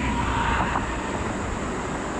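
Busy highway traffic: a steady rumble and hiss of vehicles going by, with a deep low drone underneath.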